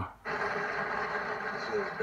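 A film soundtrack playing from a television and picked up across the room. A quarter second in, a steady dense background with voices and a low held tone sets in.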